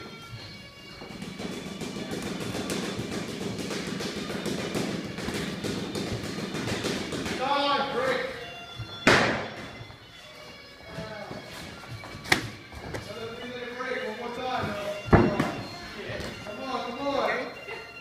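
Sharp thumps of gloved punches and kicks landing during Muay Thai sparring, a few seconds apart, the loudest three in the second half. Background music and voices run underneath.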